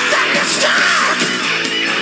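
Hard rock music with electric guitar and a shouted vocal line.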